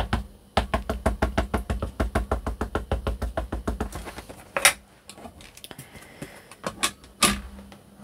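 A small ink pad dabbed quickly and repeatedly onto a clear stamp, about six light taps a second, inking it in fossilised amber yellow; the tapping stops about halfway through. Then come two sharp clicks, a couple of seconds apart.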